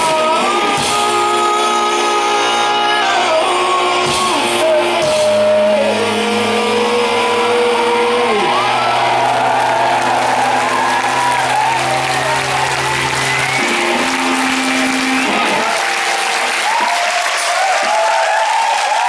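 Live rock band closing a song: long held chords that step slowly downward, with sung lines above them. About 15 seconds in the bass drops away and crowd cheering rises over the last notes.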